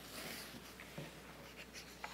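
Sheets of paper rustling as they are set down on a wooden lectern, faintly, with a soft knock about a second in.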